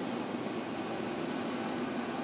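Moving passenger train heard from inside the carriage: a steady rumble with hiss and no distinct rail-joint clicks.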